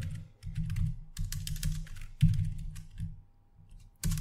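Computer keyboard typing: a quick run of keystrokes, each a click with a low thud, stopping for about the last second.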